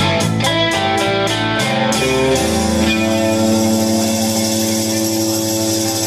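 Live rock band finishing a song on electric guitar and drums: a quick run of drum hits in the first two seconds, then about three seconds in a final chord is struck and held, left ringing.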